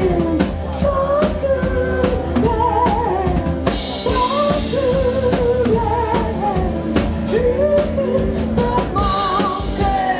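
Live rock band playing, with a drum kit and a woman singing the lead vocal line. Cymbals wash in a little before halfway and again near the end.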